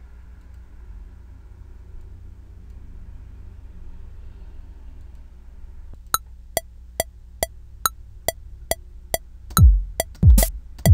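Software metronome ticking at 140 BPM, a little over two clicks a second, as a two-bar count-in that starts about six seconds in. Near the end a deep electronic kick drum from a virtual drum kit comes in as recording begins. Before the clicks there is only a faint low hum.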